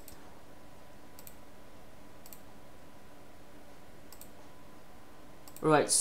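A few faint, irregularly spaced computer mouse clicks, about four, over a steady low hiss of room and microphone noise.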